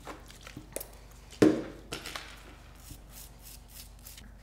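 Light handling sounds of manicure tools and bottles on a tabletop: a few small clicks, with one sharp, louder clack about one and a half seconds in.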